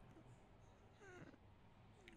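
Near silence, with one faint, short animal cry falling in pitch about a second in.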